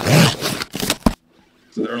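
Cardboard packaging being torn open and handled: a rough, tearing rush that ends about a second in with a sharp knock as a small box is set down on a wooden desk.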